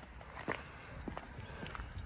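Footsteps on a tarmac footpath: a few sharp steps about half a second apart.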